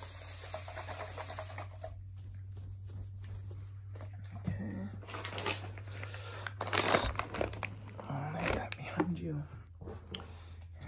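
Gloved hands handling a crinkly clear plastic item close to the microphone: irregular plastic rustling and handling noise, with several louder rustles, the loudest about seven seconds in.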